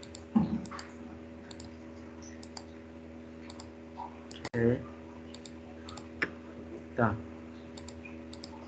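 Scattered clicks of a computer mouse and keyboard, one or two at a time, over a steady electrical hum, with a few brief spoken sounds.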